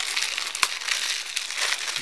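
Blu-ray case and cardboard slipcover handled in the hands: a steady plastic crinkling and rustling, with a sharp click about half a second in.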